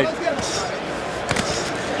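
Arena crowd noise with two sharp thuds about a second and a half in, typical of boxing gloves landing punches.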